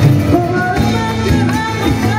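A live Latin band playing, with acoustic and electric guitars, bass, drum kit and hand percussion. A melody line glides up and down over the steady accompaniment.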